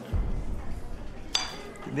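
A metal spoon clinks once against a ceramic plate about one and a half seconds in, with a short high ring. A low rumble comes just before it, near the start.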